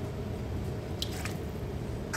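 A short wet squish about a second in, from water and wet dough in a mound of flour, over a low steady background hum.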